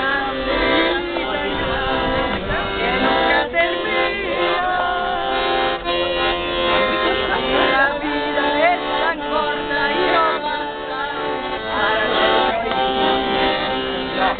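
Piano accordion playing a tune, with voices singing along over its held chords.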